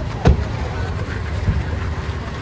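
Car engine idling with a steady low rumble. A sharp knock comes about a quarter second in, and a softer one about a second and a half in.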